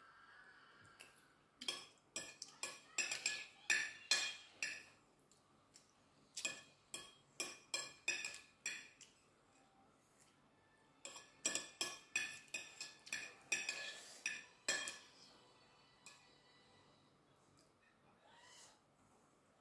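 Metal spoon and fork clinking and scraping against a plate as the last of the food is gathered up, in three runs of quick clinks separated by short pauses.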